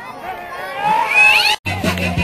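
Music playing, with a high, squeaky voice sliding upward in pitch about a second in. The sound cuts out for a moment near the end, then the music comes back with a steady beat.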